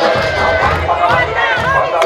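A crowd of guests shouting and whooping, several short rising-and-falling calls, over loud dance music with a steady low beat.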